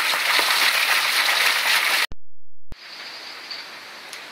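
Water gushing from the open end of a three-inch PVC micro-hydro pipe onto stream rocks, the full flow under about 125 feet of fall: a loud, steady rushing hiss that cuts off suddenly about two seconds in. A brief low hum follows, then a much quieter steady hiss.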